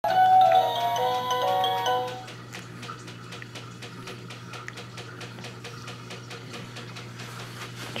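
Battery-operated musical baby toy playing a short electronic tune of clear stepped notes for about two seconds. It then drops to a faint, steady ticking at about five ticks a second.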